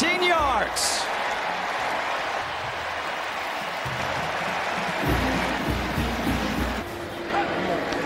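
Stadium crowd noise after a touchdown, with music, probably a marching band, underneath. Low, repeating beats stand out between about five and seven seconds in.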